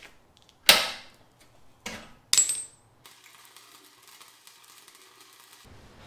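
Three sharp metal clanks from a wrench working the retention bolt on a steel tire carrier: one about a second in, the loudest, then two close together near the two-second mark, the last ringing briefly.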